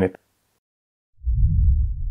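A deep, low rumbling boom, a transition sound effect under a logo card, coming in about a second in and fading away over about a second and a half.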